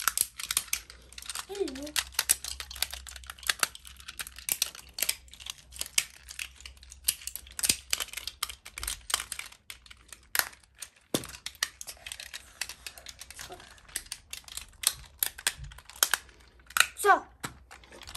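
Small plastic Tobot mini transforming toys being twisted and snapped between car and robot form by hand: a rapid, irregular run of small plastic clicks and snaps.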